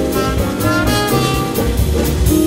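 Live jazz quintet playing: a trumpet line over double bass, piano, archtop guitar and drum kit, with a steady cymbal beat.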